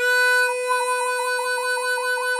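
A-key diatonic blues harmonica holding one draw note, the 4 draw, with a hand tremolo. From about a second in, the cupped hands opening and closing around the harp make the note pulse about five times a second.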